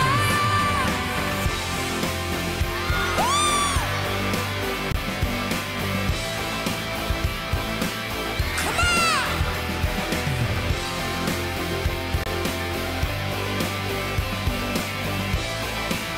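Live rock band playing an instrumental passage with a steady beat. A held sung note ends about a second in, and two short high cries rise and fall over the music, about three and nine seconds in.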